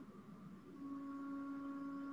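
A faint, steady humming tone, one held pitch that grows a little firmer about a second in, in the background of an online-meeting audio feed.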